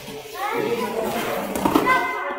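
Children's voices talking and calling out over one another in a gym hall, getting louder near the end.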